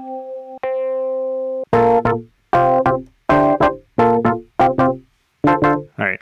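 Software-instrument keyboard preset being auditioned: one held note, struck again shortly after it starts, then about six short chord stabs in a steady succession, each dying away quickly.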